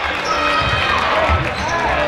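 Live basketball game sound in an echoing sports hall: a basketball bouncing on the court and players' shoes squeaking on the floor, over voices from players and crowd.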